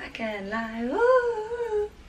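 A woman humming with her mouth closed: one pitched 'mm' that slides up about half a second in, holds for nearly a second, then stops.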